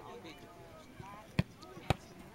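A football kicked hard in a penalty, a sharp smack about one and a half seconds in, then a second smack half a second later as the goalkeeper's gloves stop the ball.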